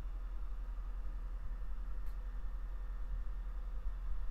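Quiet room tone under a steady low hum, with a faint click about two seconds in.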